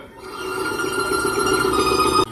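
A steady ringing alarm tone, swelling in over the first half second and then holding evenly, with a fast flutter to it.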